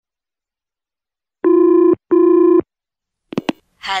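Telephone ringing with a double ring: two short, steady rings in quick succession, followed by two short clicks as the call is answered.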